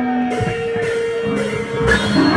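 Electric guitar letting single notes ring out as a live punk rock song begins. Near the end, a loud hit marks the full band coming in.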